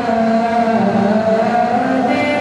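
A man singing a naat into a microphone, holding one long note that bends slowly in pitch.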